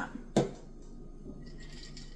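A single short, sharp click or knock about a third of a second in, followed by quiet room tone.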